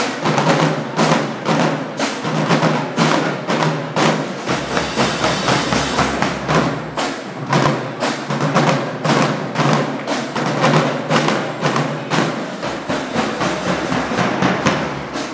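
Marching band drumline playing a cadence: snare drums and cymbals beating a steady, fast rhythm of sharp hits.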